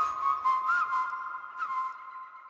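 Whistled melody line from a dance-pop track's outro, sliding between notes, with a few light percussion ticks and no bass or beat, fading out.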